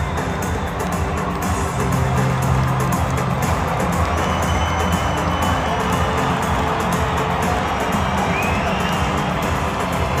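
Music played over a football stadium's loudspeakers, with long held bass notes, under the steady noise of a large crowd in the stands.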